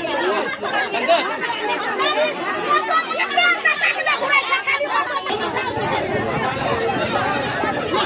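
A crowd of people talking and shouting over one another in a heated dispute. Many voices overlap, with no single speaker standing out.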